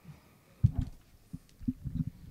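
A few short, low, muffled knocks, the first about half a second in and the rest close together in the second half.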